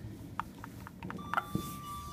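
Otis lift arrival signal: a steady electronic beep starts a little after a second in and is still sounding at the end, after a few small clicks. It signals that the called car has reached the floor.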